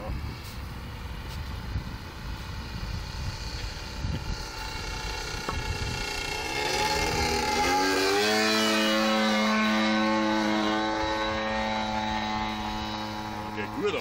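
A radio-controlled model plane's DLE-55 single-cylinder two-stroke gasoline engine in flight. It is faint at first; about seven seconds in its note rises sharply, then holds a steady high buzz, loudest as the plane flies low past.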